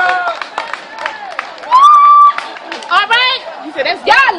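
People's voices shouting and chattering, with one loud held yell about two seconds in and more calls just before the end.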